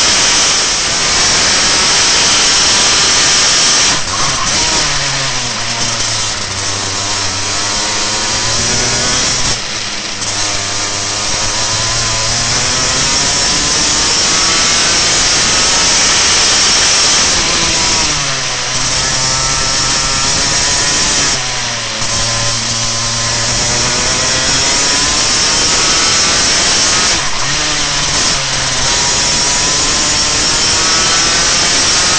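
Racing kart's single-cylinder two-stroke engine running hard at high revs, its pitch dropping five times as the kart slows for corners and climbing back each time the throttle opens again.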